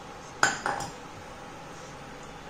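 Three quick metal clinks about half a second in, the first the loudest, each ringing briefly: a small stainless steel strainer tapped against the rim of a pan to shake off the last of the jaggery syrup.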